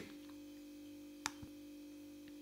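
Steady low electrical hum in a pause of the recording, with one sharp click a little over a second in and a fainter one just after.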